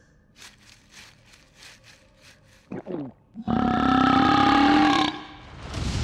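A cartoon dinosaur's long, low grunt, starting about three and a half seconds in and lasting about a second and a half, its pitch falling slightly. A short, high voice comes just before it.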